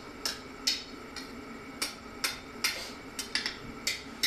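Blacksmith's hammer striking red-hot iron on an anvil in a quick, uneven series of ringing blows, about two a second. The thin bar is being folded over and over to build up the nose of a forged lock bolt.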